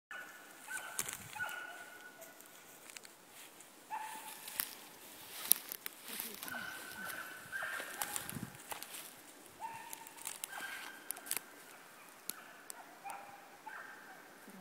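Footsteps and paws moving over dry twigs and moss on a forest floor, with many sharp twig snaps and crackles and a few dull thumps. Short, high, steady calls of about half a second recur every few seconds.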